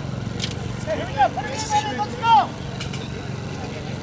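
Voices shouting short calls across an open rugby pitch over a steady low rumble, the loudest call about two and a half seconds in.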